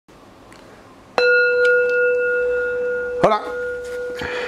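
A single bell-like chime struck about a second in, ringing on with one clear steady tone and fainter higher overtones.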